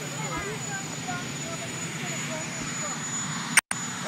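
Presidential helicopter's turbine engines running steadily with a constant high whine, under faint, distant reporters' voices asking a question. Near the end there is a sharp click and a split-second dropout in the audio.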